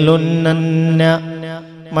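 A man's voice chanting a line of Arabic verse in a drawn-out, melodic style, holding one steady note that grows quieter in the second half.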